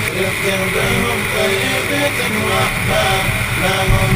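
An SUV driving over a sandy desert track: steady engine, tyre and wind noise picked up on its bonnet, with a faint voice underneath.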